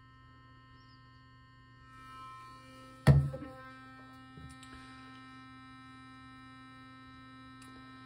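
Burst sonic electric toothbrush running partway through its two-minute cleaning cycle, a steady buzzing hum. About three seconds in it is set down upright on a stone countertop with a sharp knock, and it keeps humming.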